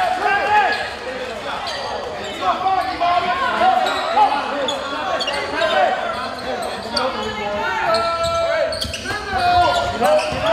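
Basketball being dribbled on a hardwood gym floor, with sneakers squeaking and players and spectators calling out, all echoing in a large gym.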